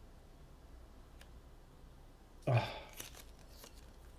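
A protective backing sheet is peeled off a metal base plate by hand. There are faint handling sounds, then a short papery rustle and a few light clicks about two and a half seconds in.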